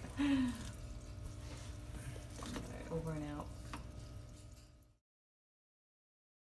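Short human voice sounds, a laugh-like vocal just after the start and another brief voiced sound about three seconds in, over a low steady hum; the audio cuts off to silence about five seconds in.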